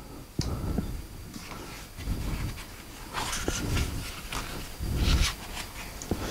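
Handling noise from adjusting the head of a metal boom stand: a sharp click early on, then small knocks and short rustling bursts, the loudest about three and five seconds in.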